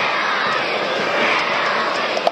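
Football stadium crowd noise: many voices shouting and singing together in a steady, unbroken wash of sound.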